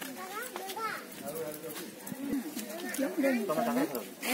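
Several people talking, with higher voices of women or children among them, louder over the last second.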